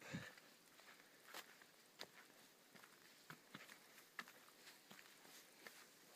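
Faint footsteps on a dirt forest path: a scatter of soft, irregular steps and light crackles against near silence.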